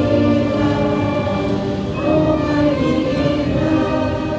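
Brass band playing a slow anthem-like tune while a crowd sings along in unison.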